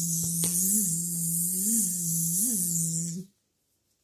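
A woman's voice imitating a fly buzzing: one long, held 'bzzzz' with a few small wobbles in pitch, ending about three seconds in.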